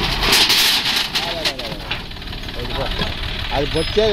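John Deere 5050E tractor's three-cylinder diesel running steadily as its front dozer blade pushes into a pile of bricks. For the first second and a half or so, the bricks and rubble scrape and clatter against the blade; after that the engine runs on alone.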